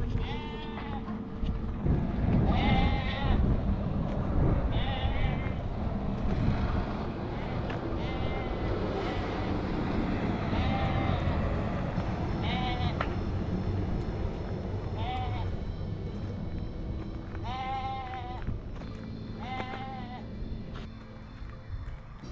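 Sheep bleating again and again, one wavering call roughly every two to three seconds, over a low steady rumble.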